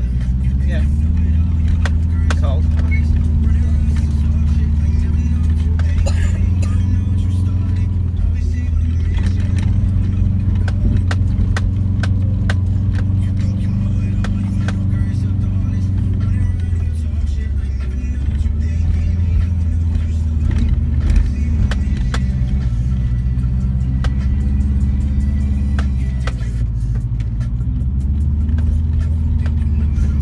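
A 2004 Subaru Forester's flat-four boxer engine heard from inside the cabin, pulling uphill on a dirt track with a steady low drone. Its pitch dips and comes back up about three times. Light rattles and knocks from the rough road run throughout.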